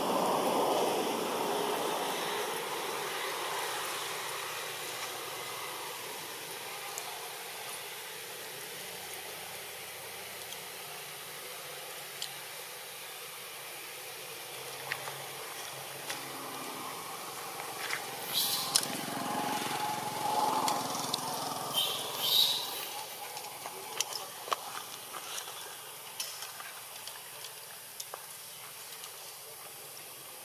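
Steady outdoor background hiss, with a few short, sharp calls from long-tailed macaques about two-thirds of the way through.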